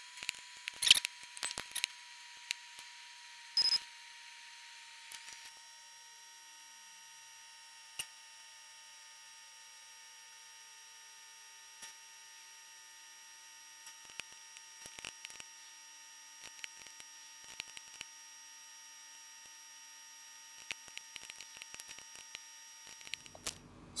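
Computer mouse clicking now and then: a few sharp single clicks and small clusters of quieter ones. Under them is a faint, steady electronic hum with a thin high whine.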